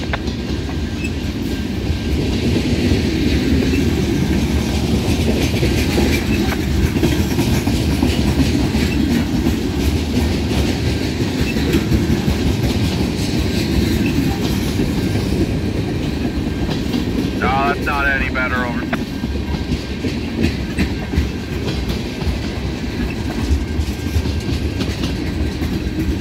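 Freight cars of a slow-moving train rolling past: a steady rumble and rattle of the cars, with the clickety-clack of steel wheels over rail joints.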